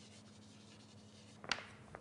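Faint scratching of writing on a board, with a low steady hum in the room and one sharp tap about a second and a half in.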